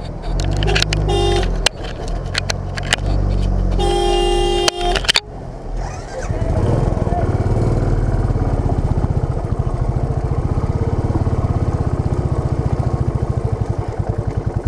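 A bus horn sounds twice over a big engine's drone as the bus passes close alongside: a short toot, then one held for about a second. After about five seconds, a Royal Enfield Bullet's single-cylinder engine runs alone with an even, fast pulse, with the bike jolting over a rough mud track.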